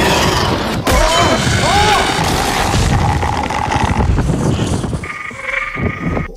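TV battle soundtrack: a wounded dragon's cries as it is shot out of the air with giant crossbow bolts, over dramatic orchestral score. Two bending cries come about one to two seconds in, and the din thins out after about five seconds.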